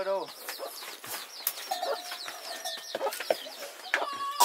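Chickens clucking and cheeping, a run of many short high-pitched chirps.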